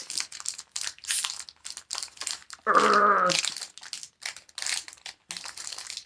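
Small plastic zip bag crinkling and rustling in rapid short strokes as a bracelet is worked out of it, with some struggle. A brief murmur of a woman's voice comes about three seconds in.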